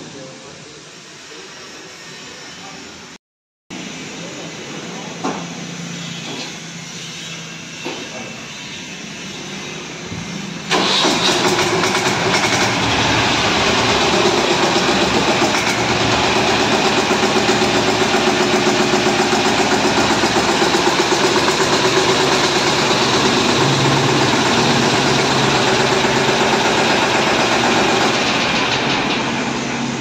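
Captain 200 DI 20 hp mini tractor's diesel engine starting up about ten seconds in, then idling loudly and steadily with an even pulse. Before it starts there is only quieter background sound with a couple of light knocks.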